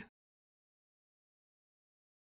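Near silence: the sound track is dead, just after the clipped end of a short recorded voice call at the very start.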